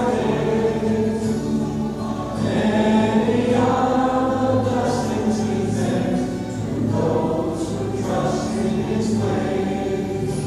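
A choir singing a hymn in slow, held notes.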